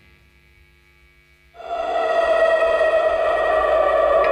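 Near silence for about a second and a half, then a held amplified chord swells in quickly and sustains steadily with effects on it, as the live band's song opens.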